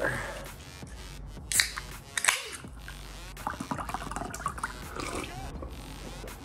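A drink being mixed in a tall glass and then drunk, with two sharp knocks near the middle and a run of irregular swallowing and liquid sounds toward the end.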